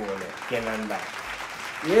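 Applause, with two short bursts of voices over it near the start.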